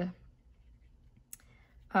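A quiet pause with faint room tone, broken once by a single short, sharp click a little past halfway.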